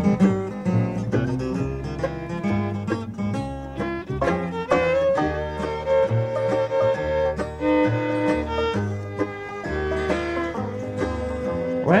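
Bluegrass band of guitar, banjo, mandolin, fiddle and upright bass playing the instrumental intro to a song, over a steady walking bass line, with long held melody notes in the middle. The lead voice comes in singing at the very end.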